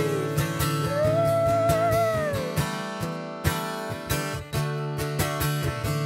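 Steel-string acoustic guitar played solo in a slow instrumental passage, chords strummed and picked. In the first two or three seconds a held melodic note rises and falls over the chords.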